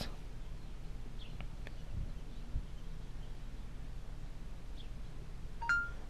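Two faint clicks of a Samsung Galaxy Gear smartwatch's power button pressed twice. Near the end comes the watch's S Voice prompt tone, a short beep stepping up to a higher one, signalling that it is listening for a command.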